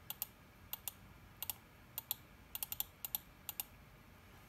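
Typing on a computer keyboard: about fifteen short, irregular clicks, many coming in quick pairs.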